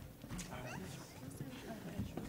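Faint murmured talking from several people, with a few light knocks like feet shuffling on a stage floor.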